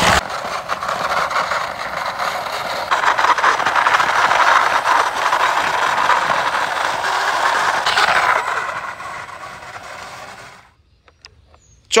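Cheap plastic toy bus pushed by hand along a rough concrete wall, its plastic wheels rolling with a continuous rattling scrape. The sound grows louder a few seconds in and fades out near the end.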